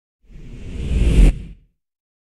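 A whoosh transition sound effect with a deep rumble underneath, swelling for about a second and then cutting off sharply, leaving a short fading tail.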